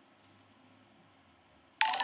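Faint room tone, then near the end a sudden electronic chime: several steady tones at once, ringing on.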